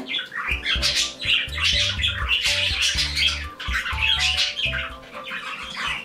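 Several pet birds chirping and squawking in a small room, over background music with steady low notes.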